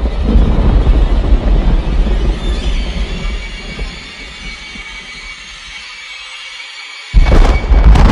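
End-screen outro music: heavy bass that fades away over the first four seconds while high held tones carry on, then a sudden loud hit about seven seconds in.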